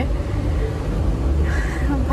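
Steady low rumble inside a car's cabin, typical of the parked car's engine idling.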